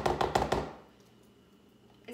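Spoon stirring thick Greek yogurt in a plastic container, clacking against its sides in a fast, even run of about nine taps a second that stops a little under a second in.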